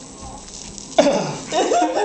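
A young man's voice doing a high-pitched old-lady impression: about a second in, a sudden loud cough-like outburst, followed by wavering, high vocal sounds without clear words.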